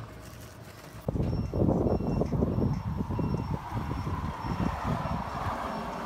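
Wind rumble and handling noise on a phone's microphone, starting suddenly about a second in and running on as a rough, fluctuating rumble.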